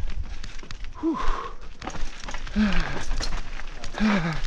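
Hardtail mountain bike rattling and clicking over a rocky dirt trail, with wind rumbling on the microphone. Two short voice sounds break in, about a second in and again near three seconds.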